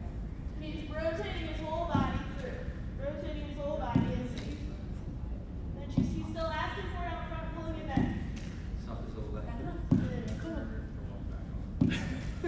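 Lacrosse ball thrown against a concrete-block wall, hitting it about every two seconds, six times in all, with indistinct talking in between.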